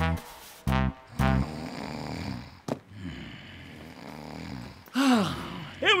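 A short brass-like musical sting, then a man snoring, low and steady, from about a second and a half in. A swooping sound and speech follow near the end.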